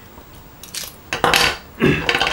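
Small metal clinks and a short scrape as a steel utility-knife blade is worked out of a stainless steel pocket tool's blade slot. The loudest scrape comes about a second and a half in.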